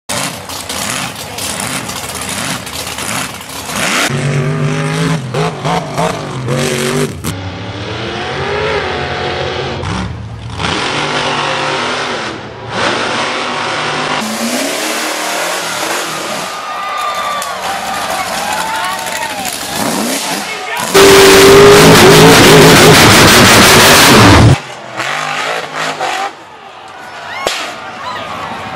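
Off-road mud trucks and buggies revving hard in a string of short clips, the engine note rising and falling and changing abruptly from one clip to the next. About three quarters through comes a stretch of very loud revving lasting about three and a half seconds.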